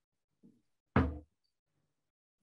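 A single short knock-like thump about a second in, preceded by a much fainter one.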